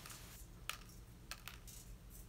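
Porcupine quills dropping and ticking against a stainless steel bowl and mesh strainer, heard as a few faint, light clicks.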